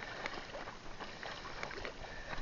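Seawater splashing and bubbling right at the microphone, a steady hiss dotted with many small clicks and crackles, as a fishing net is handled in the water.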